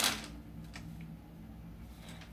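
Quiet room tone with a faint steady low hum, broken by a few small clicks: one right at the start and two faint ones around the middle.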